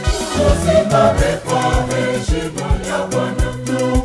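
Mixed church choir singing a hymn in multi-part harmony over a steady low drumbeat about twice a second, with hand claps.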